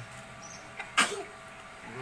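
A single short, explosive burst of breath from a person about a second in, in the manner of a sneeze, with faint high chirps around it.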